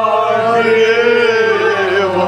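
Male voice singing a Kashmiri Sufiana kalam in a chant-like style, drawing out one long wavering note through the whole stretch, over a steady low hum.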